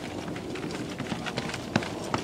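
Footsteps of soldiers walking on a dirt path toward the microphone, scattered short knocks over a steady outdoor hiss, with a few sharper knocks near the end as they come close.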